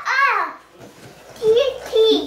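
A small child's wordless vocalizing: a high rising-and-falling squeal at the start and babbling near the end.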